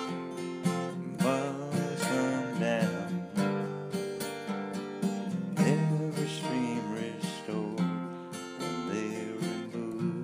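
Folk song music: acoustic guitar strumming chords, with a wavering melody line over it.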